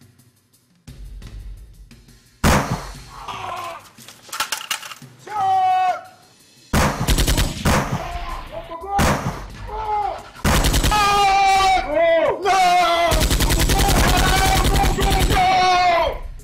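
Gunfire from automatic rifles: a single loud shot, scattered shots, then rapid bursts of automatic fire, the longest running through the last three seconds.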